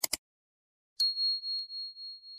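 Subscribe-button animation sound effects: a quick double click, then about a second in a single high bell ding that rings on and slowly fades.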